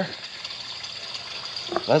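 Steady rush of falling water from a backyard pond waterfall, with a man's voice starting again near the end.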